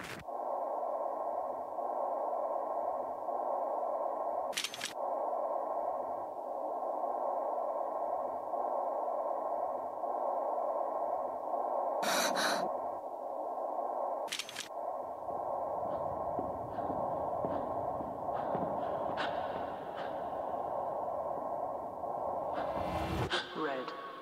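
A steady, static-like electronic drone over a sound system, with sharp clicks about 5, 12 and 14 seconds in; in the second half it grows busier and more varied.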